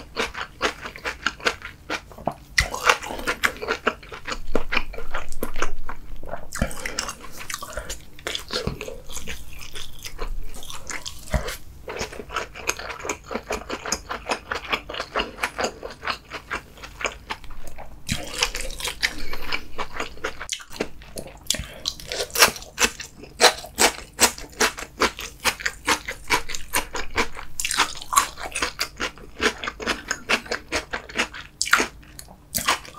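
A person chewing a mouthful of food close to the microphone, with rapid, irregular wet clicks and smacks throughout, louder about four to six seconds in and again in the last third.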